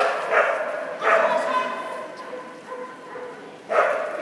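A dog barking repeatedly while running, with three loud barks about a third of a second in, about a second in and near the end, and drawn-out pitched sounds between them.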